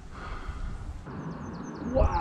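A small bird singing: a quick run of short, high, downward-sweeping notes that starts about halfway through, over a faint steady rush.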